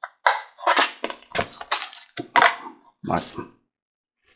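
Short bursts of indistinct talking mixed with sharp clicks and crackles of thin plastic being handled.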